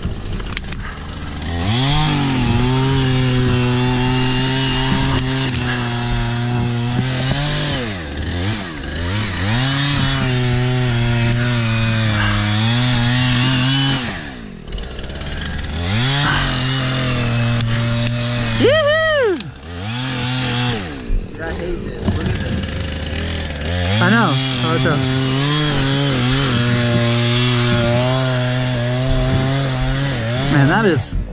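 Gas chainsaw cutting through fallen logs in four long passes, its pitch held steady under load and falling back to idle between cuts. About two-thirds of the way through it revs briefly and sharply higher.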